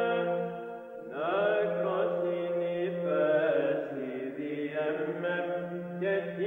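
Byzantine chant: a solo chanting voice over a held low drone (the ison). The melody dips briefly just before a second in, then begins a new phrase with an upward slide.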